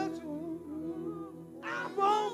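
Worship singing at a lull: soft sustained keyboard tones under a faint, quiet voice, then the singers come back in loudly near the end.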